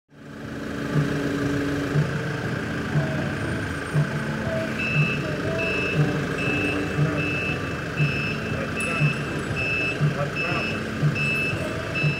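A reversing alarm beeping steadily, about once every two-thirds of a second, from about five seconds in, over steady vehicle noise. A low knock repeats about once a second throughout.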